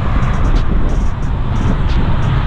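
Wind buffeting the microphone over a steady rumble of road traffic, with a few faint clicks.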